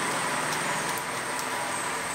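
Steady background noise: an even hiss with a faint high whine running under it, with no distinct events.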